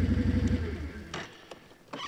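Snowmobile engine idling, then switched off: its note drops and dies away about a second in, followed by a couple of faint clicks.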